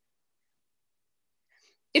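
Near silence on a video call: the line goes dead quiet. A faint, brief sound comes near the end, just before a voice starts speaking.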